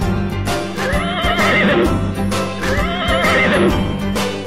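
Two horse whinnies, each about a second long with a wavering pitch, over bouncy advertising jingle music with a steady beat.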